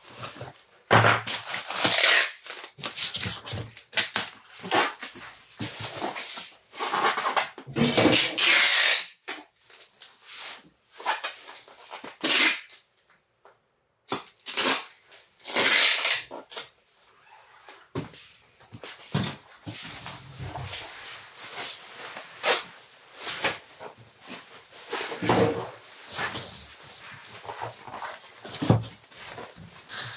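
Clear packing tape pulled off a handheld tape dispenser in several loud rips, mixed with the rustle and crinkle of bubble wrap being handled and folded around a box.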